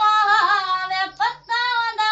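A woman's high singing voice from a song, holding long, slightly wavering notes with no drums under it, broken by a short pause about a second and a half in.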